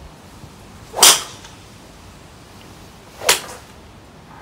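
Two golf shots: a club striking a ball off a practice mat, once about a second in and again near the end, with the first hit the louder.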